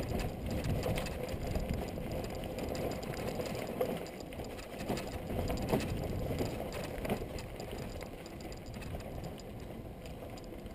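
Mountain bike rolling along a dry dirt singletrack: tyres crunching over the dirt and a continuous clattering rattle from the bike, with a few sharper knocks in the middle.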